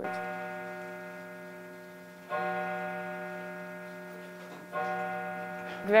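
A low chime struck three times, about two and a half seconds apart, each time on the same note, which rings on and slowly fades.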